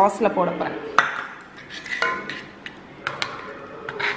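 A handful of sharp metal clinks, roughly a second apart, from a steel spoon and small steel bowl knocking against a stainless steel saucepan as desiccated coconut is tipped into jam syrup and stirred in.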